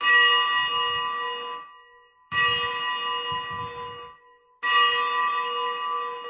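An altar bell struck three times, about two seconds apart, each stroke ringing with a clear pitched tone and fading away. It is the consecration bell marking the elevation of the host just after the words of institution.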